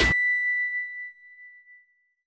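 A single bright electronic ding closing a logo sting: it strikes as the electronic music cuts off just after the start, then rings out and fades away over about two seconds.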